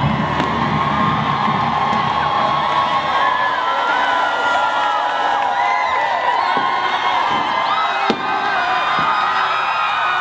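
A large crowd of students cheering and shouting, many high voices whooping over one another, as the brass-backed music fades out in the first second.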